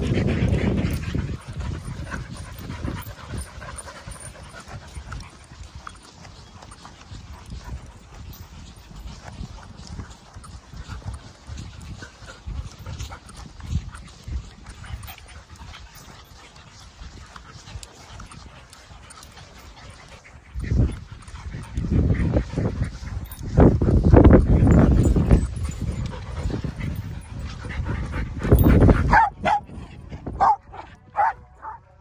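Several dogs at play close to the microphone, with panting and occasional dog vocalizations; the sound grows louder in bursts in the last ten seconds or so.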